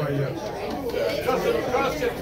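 Indistinct chatter of several people talking at once, with no music playing.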